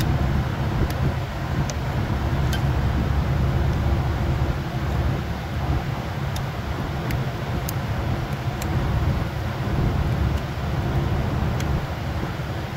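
A steady low hum throughout, with scattered light clicks as a plastic automotive fuse is worked into its slot in a car's under-hood fuse box.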